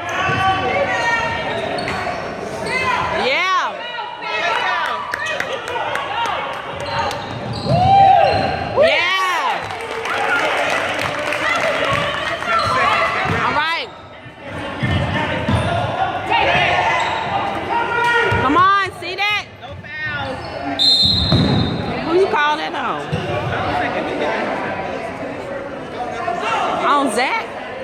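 Basketball being dribbled on a hardwood gym floor, with short sneaker squeals from players cutting on the court, under steady spectator chatter.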